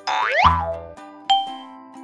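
Cartoon sound effects over a steady children's music bed: a quick rising boing-like glide with a low thud at the start, then a bright ding a little over a second later.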